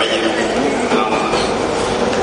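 Indistinct voices over a microphone and loudspeaker, blurred in a steady, dense din of hall noise with no clear words.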